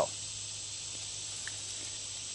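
Steady background hiss with a low hum underneath, and one faint tick about one and a half seconds in.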